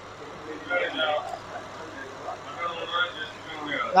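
Faint background talk and murmur of people in a small restaurant, over a low steady hum.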